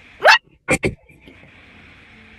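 Three sharp, breathy gasps from a person: one rising in pitch, then two quick ones close together.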